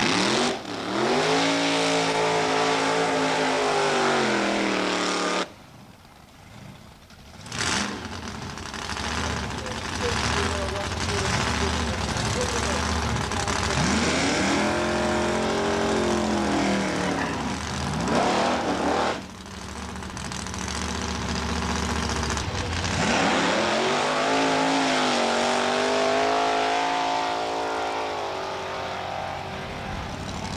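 Drag-racing doorslammer V8 engines revving and launching down the strip, several runs in turn, each with the engine pitch sweeping up and then falling off. The sound drops away briefly about five seconds in, and a sharp crack follows a couple of seconds later.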